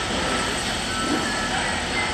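Steady construction-site noise of running machinery, with faint voices in the background.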